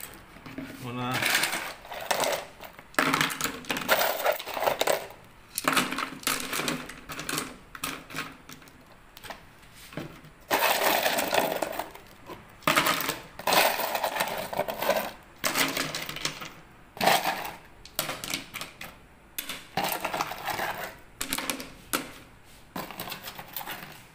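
Smooth river stones clattering into plastic flower pots as they are dropped and arranged by hand, in irregular runs of sharp clacks.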